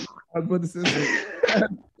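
A man's throaty vocal sounds with no words, such as throat clearing, in two bursts, the second longer and louder.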